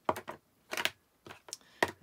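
Hard plastic craft tools clicking and tapping on a table as a clear acrylic stamp block is set down and a Memento ink pad case is picked up and handled: about half a dozen short, sharp clicks, the sharpest near the end.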